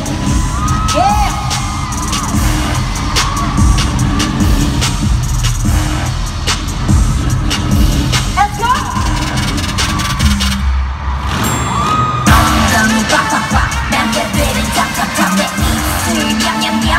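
Loud amplified live pop music heard from the arena crowd, with a heavy bass beat and a singing voice gliding over it. The treble drops away briefly about ten seconds in while the bass carries on.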